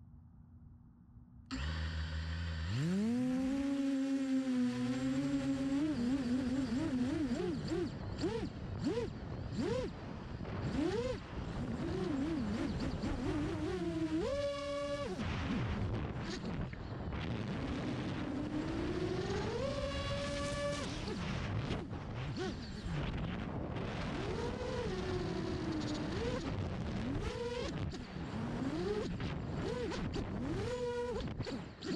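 FPV quadcopter's brushless motors (Hyperlite 2206.5 1922KV) driving 6-inch props, heard from the onboard camera: they spin up about two seconds in, then whine up and down in pitch as the throttle changes, over wind noise. There are sharp climbs to a higher whine at high-throttle punches around the middle and again about two-thirds through. The motors run without desync stutters, as expected after the motor with suspected shorted windings was replaced.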